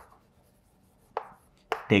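Chalk knocking against a chalkboard while writing: two short, sharp taps, about a second in and again shortly before the end.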